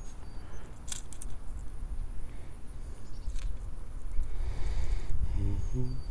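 A steady low rumble, like wind on the microphone, with two sharp clicks about a second and three and a half seconds in. Near the end a man starts humming.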